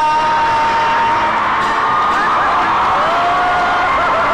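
A man singing a long held note over an acoustic guitar, then an audience cheering and whooping.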